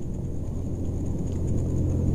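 A low, steady rumble that grows slowly louder.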